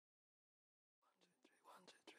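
Silence, then about a second in, faint whispered voices fade in and grow louder.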